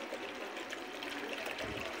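Plain water trickling in a thin stream from an upturned plastic bottle into a plastic bucket.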